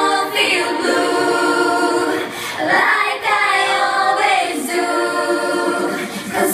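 A girls' vocal ensemble singing in harmony into microphones, unaccompanied, with brief breaks between phrases.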